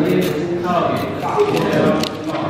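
Men's voices talking in the background, with a few light knocks.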